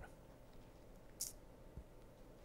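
Near silence: room tone in a pause between sentences, with one brief faint hiss a little past a second in.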